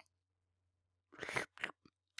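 Eating sound effect: after about a second of near silence, three quick crunchy chewing noises, the first the longest, as a mouthful of food is tasted.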